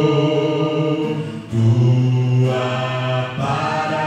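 A man singing a slow hymn into a microphone, holding long notes in a low voice.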